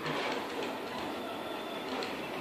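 A Picaso 3D Builder FDM 3D printer running, its stepper motors and fans making a steady mechanical whir.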